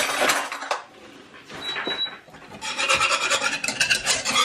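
A whisk scraping and stirring thick cheese sauce in a nonstick saucepan. It starts with a scratchy burst, goes quieter, then becomes quick, repeated strokes over the last second and a half.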